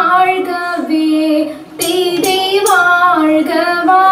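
Female singing of a Margamkali song, a melodic vocal line that breaks off briefly just before the midpoint and then resumes.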